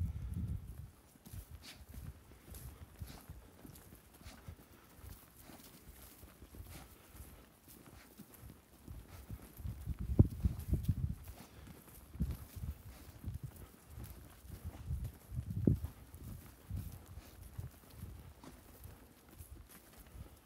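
Footsteps on dry, loose, freshly sown topsoil: irregular soft thuds from walking, loudest about ten seconds in and again a few seconds later.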